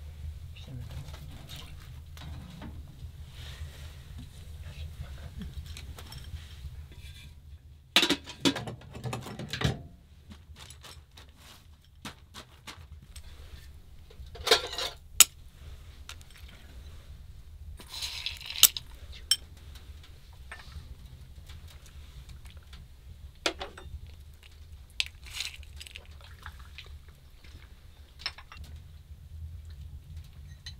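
Occasional clinks of tea glasses, saucers and dishes, with a few short, sharp clicks, over a low, steady hum.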